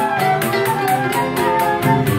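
Small live choro ensemble playing: plucked bandolim and cavaquinho, a flute melody with gliding notes, and pandeiro jingles keeping a steady, even beat.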